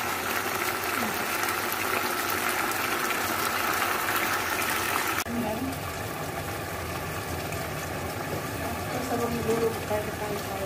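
Chicken pieces frying in a pan, sizzling steadily with fine crackles, cut off suddenly about five seconds in. A lower, duller steady noise follows, with faint voice-like sounds near the end.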